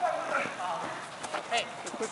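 Players calling out to each other during a small-sided football game, with a few short sharp knocks of the ball being kicked and feet striking the turf in the second half.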